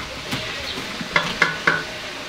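Handling noise on a handheld microphone as it is moved: rustling with three short, sharp knocks about a quarter second apart in the second half, the loudest sounds here.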